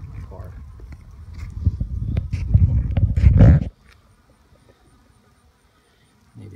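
Crunching, crackling and rustling of brittle old honeycomb being pulled apart and dragged over a wooden hive board, with heavy handling noise on the phone's microphone. It grows louder toward the middle and stops abruptly a little before four seconds in.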